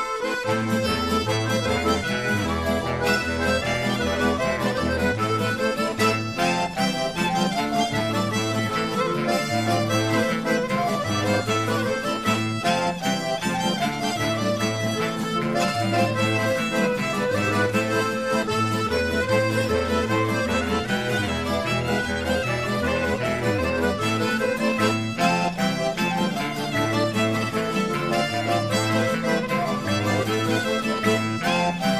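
Instrumental music with a repeating bass pattern.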